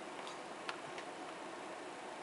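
A few light, sharp clicks over a steady background hiss, the sharpest about two-thirds of a second in.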